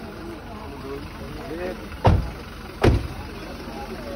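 A car engine idling under a murmur of nearby voices, with two loud thumps a little under a second apart about halfway through.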